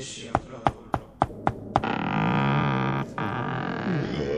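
Knocking on a wooden door, about six quick raps in the first two seconds, followed by a low drawn-out drone lasting about two seconds.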